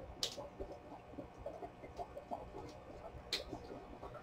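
Faint handling of paper: fingers pressing and smoothing a glued paper tab onto a paper library pocket. Small irregular crackles and taps come through, with two brief rustles, one about a quarter second in and one near the end.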